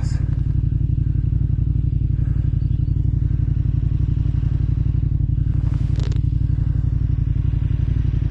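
Motorcycle engine idling steadily with a fast, even pulse while the bike stands still.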